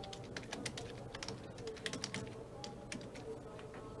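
Faint, irregular clicking of keys being typed on a computer keyboard, over a quiet steady background hum or tone.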